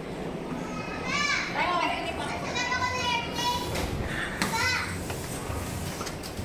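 Children's high-pitched shrieks and excited calls in play, several in a row: a couple about a second in, a longer run around the middle and another near the end.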